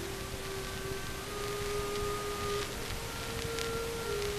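Marching band music in a soft, slow passage: long held notes whose pitch steps slowly upward.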